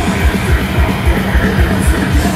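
Swedish death metal band playing live at full volume: heavily distorted guitars over fast, steady kick-drum beats, with no vocals in this stretch.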